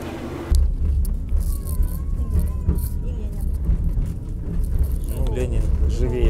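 Low, steady rumble of a moving road vehicle's engine and tyres, heard from inside the cabin. It starts suddenly about half a second in.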